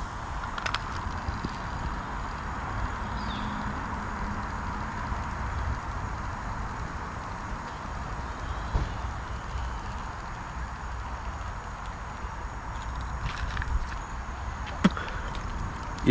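Steady outdoor background noise: an even hiss with a low rumble beneath it, and a few light clicks near the start and again a couple of seconds before the end.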